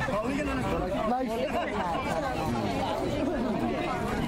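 Crowd chatter: several people talking at once, their voices overlapping with no single clear speaker.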